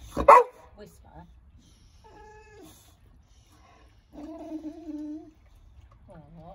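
Boxer dog vocalising to beg for tea: one short, sharp, very loud sound just after the start, then two drawn-out pitched calls. The first call is brief, about two seconds in; the second lasts about a second, from about four seconds in.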